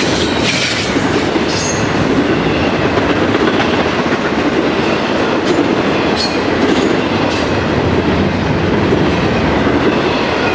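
Double-stack intermodal freight train rolling past close by: a steady, loud rumble of steel wheels on the rails, with a few brief high wheel squeals.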